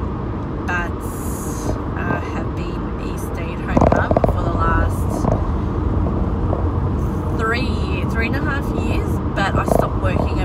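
Steady low rumble of a car heard from inside the cabin while driving, with a woman talking over it.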